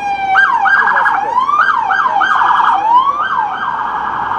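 Loud emergency-vehicle siren: a slow falling wail gives way, just after the start, to quick repeated rising sweeps, each ending in a fast warble at the top.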